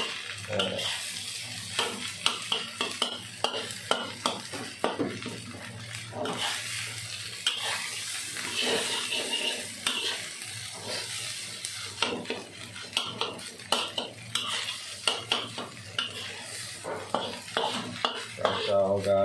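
A metal spatula stir-frying rice in a wok, scraping and clinking against the pan in quick, irregular strokes over a steady frying sizzle.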